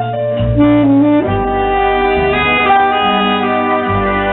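Tenor saxophone playing a slow melody in long held notes, rising to a higher note about a second in, over a backing accompaniment with a bass line.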